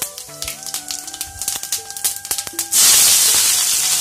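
Cumin seeds crackling in hot oil in a steel kadhai, then a sudden loud sizzle nearly three seconds in as chopped onion, garlic and chilli go into the oil.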